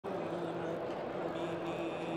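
A man's voice chanting with long held notes, carried over a microphone and loudspeakers.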